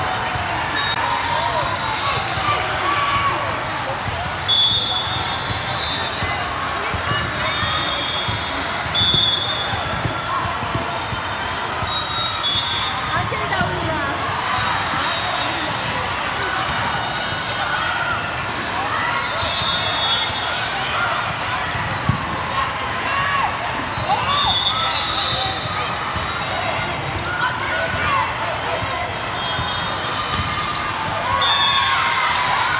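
Volleyball hall ambience: many voices talking and calling across a large echoing hall, with volleyball hits and thumps and a few louder ball impacts, near 4 and 9 seconds in and again about 22 seconds in.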